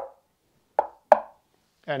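Knuckles rapping twice on the MDF cabinet of an 8-inch subwoofer, two short knocks about a third of a second apart, as a knock test of the enclosure.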